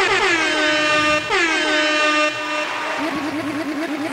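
Air horn sound effect of the DJ kind, a pitched horn tone warbling in rapid repeated sweeps, with a big falling swoop about a second in, then a lower, faster pulsing warble over the last second.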